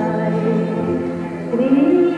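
Music with singing: a voice holding long, gliding notes over a steady low drone.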